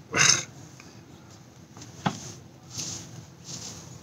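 A hooded sweatshirt being pulled off over a man's head: a short loud breathy huff, muffled by the fabric, just after the start, then soft rustling of cloth with a small click about two seconds in.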